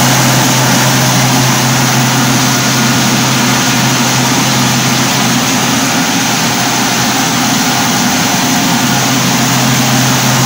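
Rice huller mill running steadily, husking paddy, with a loud, even machine drone.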